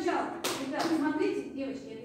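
Speech in a rehearsal hall, broken by two sharp taps about half a second apart, near the middle.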